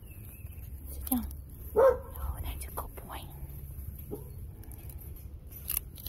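A puppy giving short vocalisations: a falling yelp about a second in, then a louder bark just before two seconds in.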